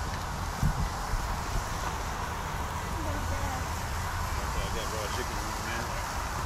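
Faint voices talking in the background from about three seconds in, over a steady outdoor rumble and hiss.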